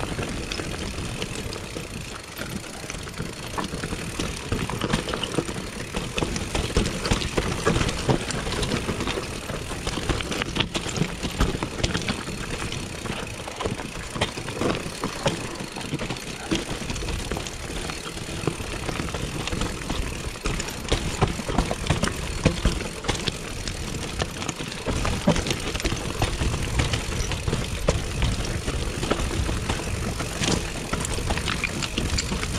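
Mountain bike riding down a rough dirt-and-stone singletrack: tyres rolling and crunching over the ground while the bike rattles and clatters over bumps in many irregular knocks, with a steady rumble of wind on the camera microphone.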